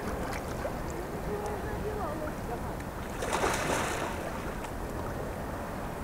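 Wind rumbling on the microphone, with faint distant voices and a brief rush of noise about three and a half seconds in.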